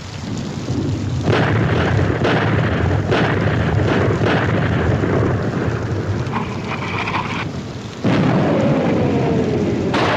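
Artillery barrage in a war-drama soundtrack: a continuous low rumble of shell explosions, broken by several sudden blasts. A falling whistle comes about eight seconds in.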